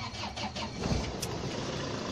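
Vehicle engine and road noise heard from inside the cabin, a steady rumble with a low thump about a second in.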